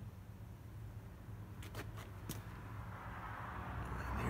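Faint steady low hum of background noise, with a few light clicks about halfway through and a faint hiss building near the end.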